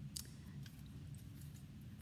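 Faint clicks and light knocks of a metal spray can being handled and set aside on a paper-covered work table.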